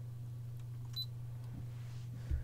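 A steady low electrical hum, with a single short, high electronic beep about a second in.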